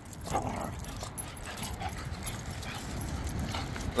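Dogs playing on leash, making faint vocal noises over steady outdoor background noise.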